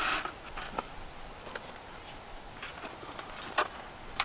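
Faint clicks and light rattles of an aluminum roll-up table's slatted top and frame being handled and fitted, with a sharper click about three and a half seconds in.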